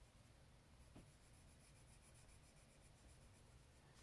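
Near silence, with the faint scratching of a Faber-Castell Polychromos coloured pencil being stroked across paper while shading.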